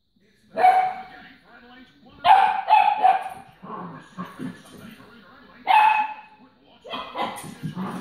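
Border collie barking in short, loud, sharp barks: one about half a second in, a quick run of three a couple of seconds in, one more past the middle, and two close together near the end.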